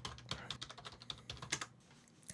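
Typing on a computer keyboard: a quick, irregular run of key clicks as a short sentence is typed, stopping shortly before the end.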